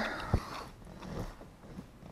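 Handling noise as the handheld camera is swung around: a soft bump about a third of a second in, then faint rustling that fades out.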